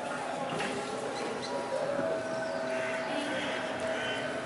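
Open-air ambience: a steady murmur of distant voices, with faint high chirps and squeaks mixed in.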